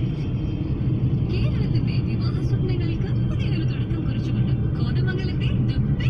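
Steady low rumble of a moving car heard from inside the cabin: engine and tyre noise on the road.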